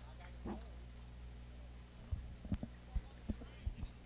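A lull in the commentary: faint booth and ballpark ambience over a steady low electrical hum, with a faint distant voice about half a second in and several soft low thumps in the second half.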